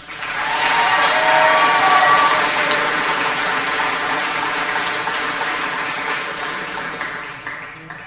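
Audience applauding, building up within the first second and then slowly dying away toward the end.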